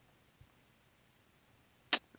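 Near silence, then near the end one brief sharp hiss: a man's quick intake of breath just before he speaks again.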